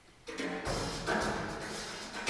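Live jazz band with drums starts playing out of near silence about a quarter second in, with strong accented hits roughly once a second: the opening of a tune.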